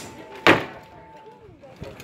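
A single loud, sharp blow landing in armoured combat, a steel weapon striking plate armour or shield about half a second in, with a short tail after it. Faint crowd voices are heard around it.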